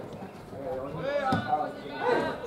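Voices shouting calls across an outdoor football pitch during play, with one sharp knock about halfway through.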